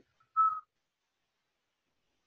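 A person's breath blown out through pursed lips, giving one short whistling tone about half a second in.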